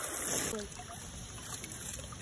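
Water from a garden hose running into a plastic tub of water. The hiss of the running water stops abruptly about half a second in, leaving quieter water sounds.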